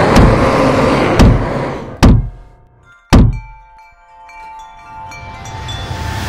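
Edited sound effects: a loud rushing noise with a few thuds, then two sharp hits about two and three seconds in. After them, chimes ring with several held tones while a soft rushing swell builds near the end.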